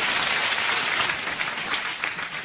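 Live audience applauding after a joke in a stand-up comedy set, easing off near the end.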